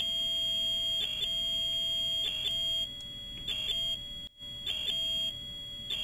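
Yaskawa Sigma-7 servo motor giving off a steady high-pitched whine, with a lower tone and short bursts repeating about every second as the axis runs. The noise is vibration caused by a servo tuning level set too high.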